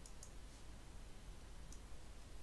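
Faint computer mouse clicks: two close together at the start and one near the end, over a low steady hum.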